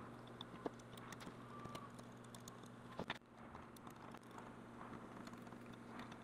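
Faint clicks and light taps of metal being handled as pewter soft jaws are set against the jaws of a bench vise, with a sharper click about three seconds in, over a low steady hum.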